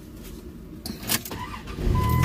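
Sounds inside a car: a steady low rumble, a single sharp knock a little over a second in, then a louder low rumble setting in just before the end.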